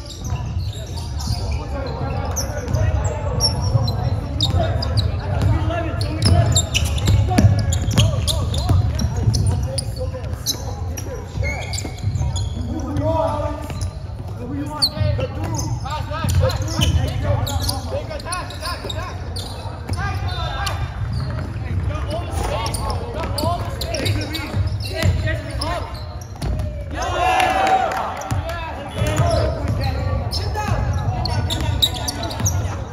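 A basketball bouncing on a hardwood gym court during a game, with voices of players and spectators calling out around it.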